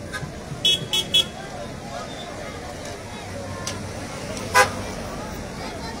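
Vehicle horn tooting three times in quick succession about a second in, then one louder short honk a few seconds later, over the steady noise of a crowded street with traffic and chatter.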